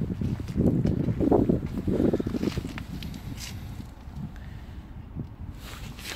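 Wind buffeting the microphone in irregular gusts of low rumble, strongest in the first couple of seconds and fading after, with a few faint clicks.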